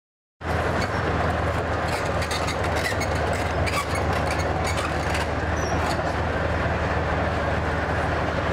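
Tank engine running steadily with its steel tracks clanking and squealing over cobblestones. The sound starts abruptly about half a second in.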